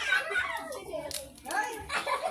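Children and adults chattering and calling out over each other, with a couple of sharp hand claps about halfway through.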